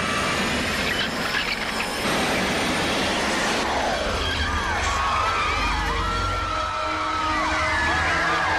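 Riders in a free-fall drop-tower elevator screaming over a loud rushing, crashing din, with a long falling glide about three seconds in. In the second half many overlapping voices scream and whoop.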